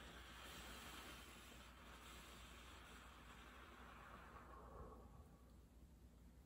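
A long, slow breath out through the mouth, a faint soft hiss that tapers away over about five and a half seconds: the eight-count exhale of a 4-7-8 breathing exercise.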